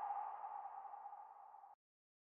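A single electronic ping from an intro logo animation, a mid-pitched tone that fades out over about a second and a half.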